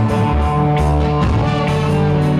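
Reggae band playing live: electric guitars and drum kit, with held notes over drum hits.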